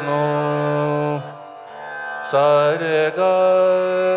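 Male voice singing long held notes over the steady drone of a tanpura tuned to D. The voice breaks off about a second in, leaving the plucked drone on its own, then comes back with a short bend in pitch and holds a steady note again.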